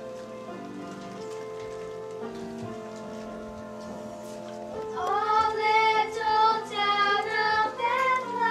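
Instrumental accompaniment of steady held notes, then, about five seconds in, a group of young girls' voices comes in loudly, singing a Christmas carol over it.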